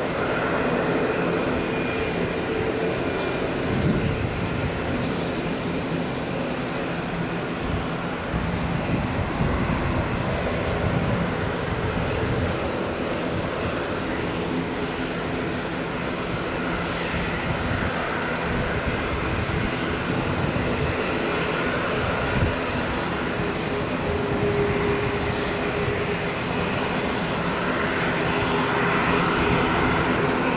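Jet engines of an Embraer E195 airliner running on the runway: a steady, loud rumble and roar with a faint whine tone, holding without a break.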